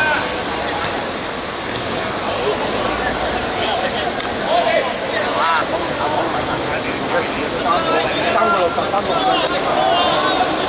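Short shouted calls from footballers and onlookers over steady crowd chatter during play, with several brief shouts about halfway through and again near the end.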